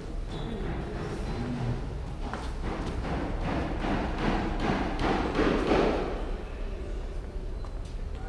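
Rhythmic thuds, about three a second, building to a peak around five to six seconds in and then fading, over a steady background murmur.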